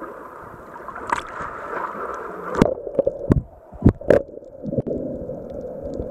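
Sea water splashing around a camera at the surface, then the camera plunges underwater about two and a half seconds in with a few loud splashes and knocks. After that the sound turns dull and muffled underwater.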